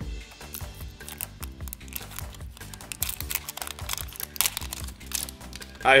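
Clear plastic shrink-wrap being peeled and crinkled off a small plastic toy capsule, a run of small crackles and clicks, over background music.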